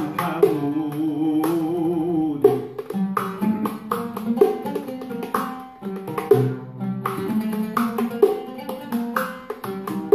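An oud plucking a Middle Eastern melody, accompanied by light taps and jingles of a riq frame drum.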